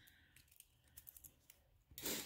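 Near silence, with faint crinkling and a few small clicks from a coated wire-ribbon rosette pin being handled.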